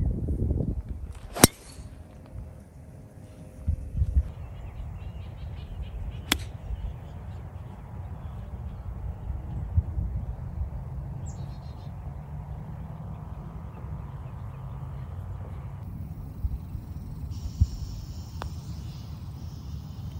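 Golf club strikes on the ball: a sharp crack of a driver hitting a tee shot about a second in, another sharp club strike about six seconds in, and a faint tap of a putter stroke near the end, over steady low outdoor background noise.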